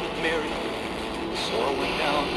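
FM radio broadcast from a portable TEF6686 receiver on a weak signal: a voice from the station under a steady hiss of reception noise.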